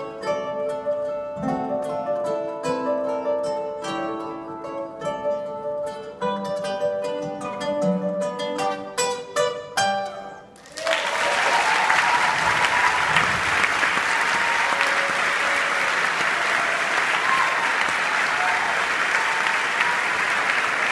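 Quartet of acoustic guitars playing the last bars of a waltz, ending on a few sharp strummed chords about halfway through. Audience applause breaks out right after and continues steadily.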